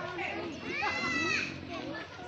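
Children's high-pitched voices calling out and chattering, with one longer drawn-out call about halfway through.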